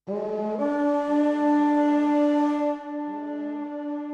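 A deep horn call: several sustained horn notes layered into a chord, starting suddenly and held, dropping to a quieter level about three seconds in.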